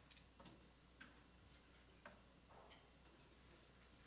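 Near silence: faint room tone with about five soft, irregularly spaced clicks.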